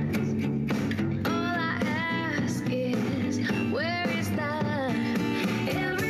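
A song with a singing voice and guitar played from CD at high volume on a Bose Wave Music System IV tabletop stereo.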